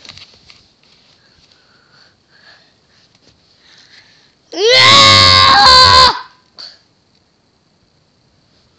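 A person's loud, high-pitched scream, once, lasting about a second and a half, starting a little past halfway through with a quick rise in pitch. Around it there are only faint small handling noises.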